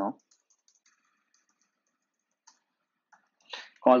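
Faint computer keyboard typing: a quick run of light key clicks in the first second or so, then a single click about two and a half seconds in.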